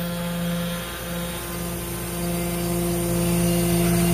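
Flatbed tow truck's engine running steadily to drive its winch as it pulls a wrecked car up onto the bed, a constant mechanical hum that grows louder in the second half.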